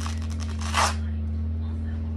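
A hook-and-loop patch being peeled off a canvas bag's flap: a quick run of rasping crackles that ends in one louder rip a little under a second in. A steady low hum runs underneath.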